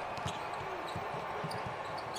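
Basketball being dribbled on a hardwood court: a string of short, low thuds, a few a second.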